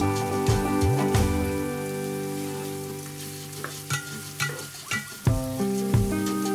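Diced onions and garlic frying in oil in a pan, sizzling with scattered small pops, with a wooden spatula stirring them. Background music plays over it: a held chord fades through the middle, and new notes come in about five seconds in.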